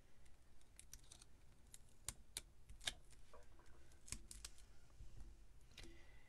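Faint, irregular small clicks and taps of fingers handling card stock and sticking foam adhesive dimensionals onto a paper card layer.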